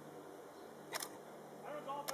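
A single click of a still camera's shutter about a second in as a picture is taken, over faint background hum; a voice starts near the end.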